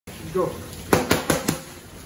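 A burst of four fast boxing punches, each landing with a sharp slap of the leather glove, about a fifth of a second apart, starting about a second in.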